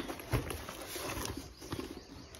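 Plastic wrapping rustling and crinkling as a wrapped package is handled and lifted out of a padded fabric bag, with scattered small clicks and a soft thump about a third of a second in.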